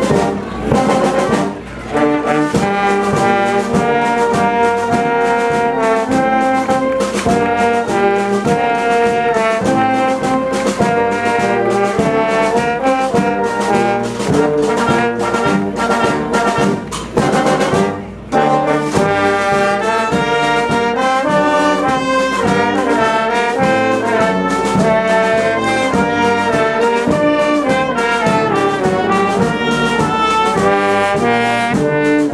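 Brass band playing a processional march, with trumpets and trombones carrying the tune over a steady beat. The music drops briefly twice, near the start and a little past halfway.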